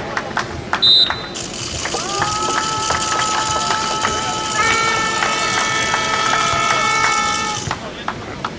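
A short, sharp referee's whistle blast about a second in. After it come several seconds of held steady tones at several pitches under a high hiss, with more tones joining partway through, all stopping shortly before the end.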